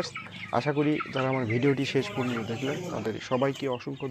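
A flock of broiler chickens clucking and calling, many birds overlapping without a break.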